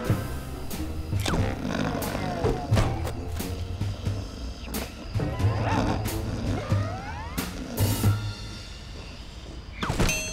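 Cartoon background music with short comic sound effects and gliding, pitched sweeps scattered through it. A cartoon polar bear's growling vocal noises come in over the music.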